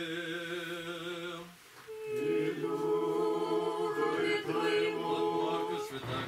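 A small group singing an Orthodox liturgical response a cappella. One chanted note is held for about a second and a half, then after a brief break several voices sing together in chant.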